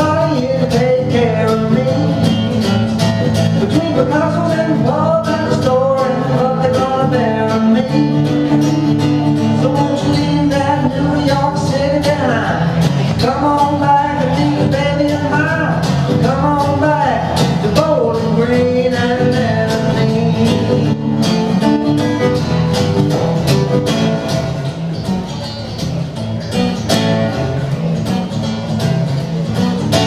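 A man singing a country-rock song while strumming an acoustic guitar in a steady rhythm, solo and live.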